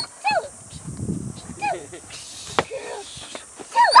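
A shepherd-type protection dog inside a car gives two short, high barks at a man at its open door, with a sharp knock about two and a half seconds in.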